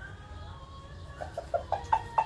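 A rooster clucking: a quick run of short clucks starting about a second in, several to the second.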